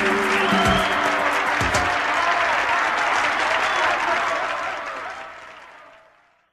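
Recorded crowd applause over the tail of a radio-station jingle tune. The music stops about a second and a half in, and the applause fades out over the last two seconds.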